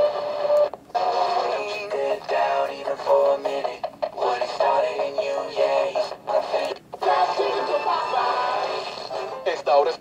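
Music with singing playing from a station on a miniature PC-styled FM auto-scan radio, heard through its tiny speaker: thin and tinny with no bass, and sibilant and distorted.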